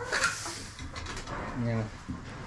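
Hens clucking quietly, with a short high sound just after the start.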